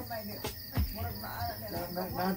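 Crickets chirping steadily, under faint voices.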